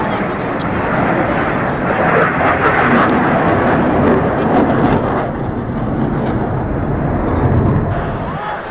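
Jet engine noise from F/A-18 Hornets flying over, a loud continuous rush that is fullest a few seconds in.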